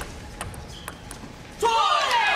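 Table tennis ball, a few sharp clicks: a serve and a short exchange of bat and table contacts. A loud voice comes in near the end.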